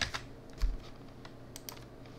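Computer keyboard keystrokes: a few scattered, sharp taps, with a quick run of three near the end, as a short tag number is typed in.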